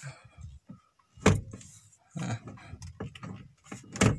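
A car's steering-column tilt adjuster is released and the wheel moved. There is one sharp clack about a second in, with keys hanging from the ignition jingling and smaller rattles after.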